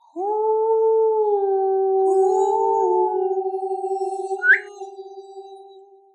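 A long, howl-like tone that glides up at the start and then holds its pitch. A second, slightly higher voice joins about three seconds in, and the tone fades out with a wavering pulse. A brief, sharp rising squeak comes about four and a half seconds in and is the loudest moment.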